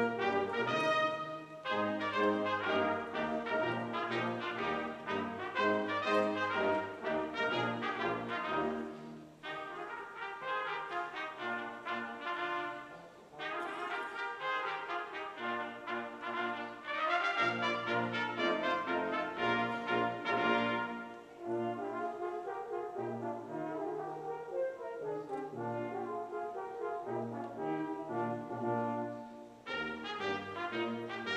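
Brass ensemble of trumpets, French horn, trombones and tuba playing a medley of American Revolutionary War tunes, in phrases with a few brief breaks.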